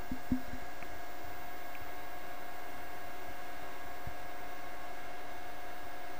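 Steady background hiss with faint constant hum tones, with a few soft low thumps in the first second.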